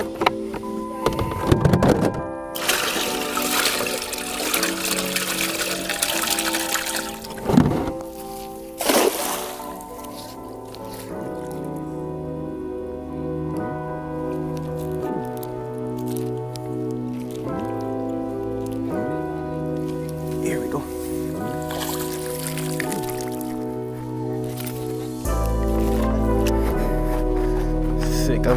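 Background music with steady held notes. From about two seconds in, several seconds of rushing, pouring water run over it, followed by two sharp splashes or knocks.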